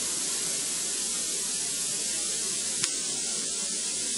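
Steady background hiss of an old broadcast recording, with one faint click about three seconds in.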